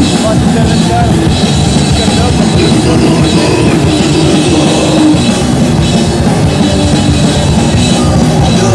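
Crust punk band playing live: electric guitar and a drum kit in a loud, dense, unbroken wall of sound.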